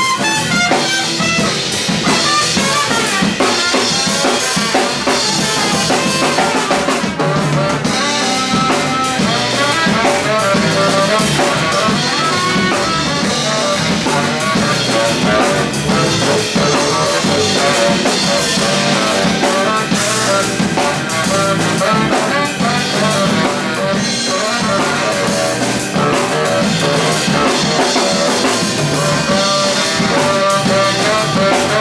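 Live funk-jazz band jamming instrumentally, with a drum kit playing a busy groove of rimshots, snare and bass drum under pitched instruments.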